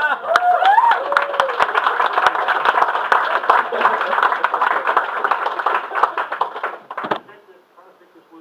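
Audience clapping: a dense patter of many hands that stops abruptly about seven seconds in. A voice calls out briefly over the start of it.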